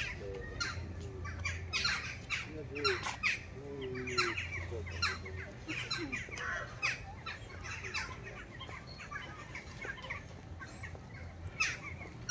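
Busy outdoor park ambience: faint distant voices with many short, sharp high-pitched calls scattered throughout, over an intermittent low hum.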